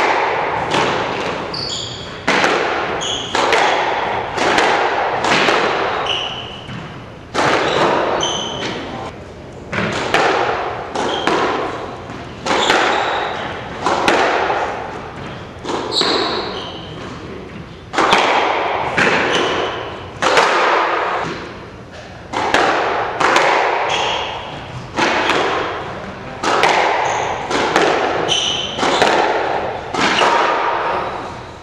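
Squash ball struck by rackets and hitting the court walls, about one sharp hit a second, each echoing in the enclosed court, with brief shoe squeaks on the hardwood floor between hits.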